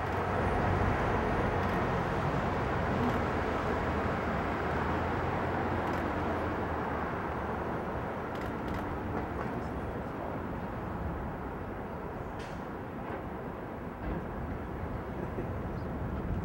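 Steady outdoor background rumble and hiss that slowly grows quieter, with a few faint clicks scattered through it.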